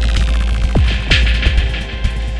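Electronic music played on hardware synthesizers: a heavy sustained sub-bass drone with two deep kick-drum thumps near the middle, under a falling high sweep that fades out early on.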